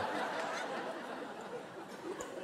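Theatre audience laughing, the laughter slowly dying away.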